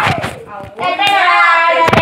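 A few knocks and rubbing sounds as the phone is handled against clothing, then, about a second in, a young child's high-pitched voice in a drawn-out, wavering vocalising without clear words.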